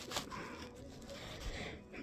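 Quiet handling noise: a phone rubbing against a fuzzy blanket close to its microphone, with a small knock just after the start.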